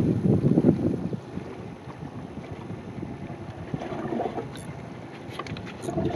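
Wind blowing across the microphone, strongest in the first second and then settling to a quieter, steady rush, with a few faint clicks near the end.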